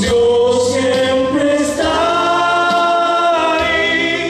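A man singing a Spanish-language Christian song into a microphone, with a long held note in the middle.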